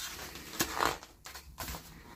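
A paper page of a picture book being turned by hand, rustling and swishing, loudest about a second in.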